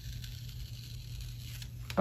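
Faint crackle of a thick vinyl-like sticker being peeled slowly off planner paper, over a steady low hum. The peel is hard going and pulls at the paper enough to wrinkle it.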